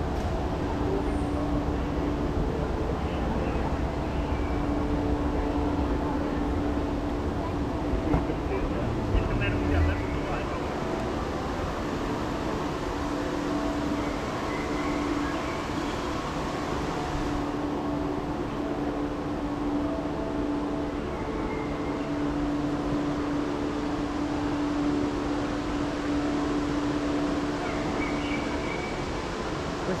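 Indoor airport terminal ambience: a steady mechanical hum with a continuous low tone, under faint background chatter of passing people, with a few brief knocks about eight to ten seconds in.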